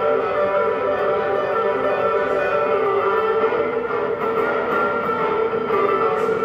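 Cherman "India" electric guitar played live through a Nux Core loop pedal and amplifier: sustained, layered guitar notes over a repeating looped part, picked up by a phone's microphone.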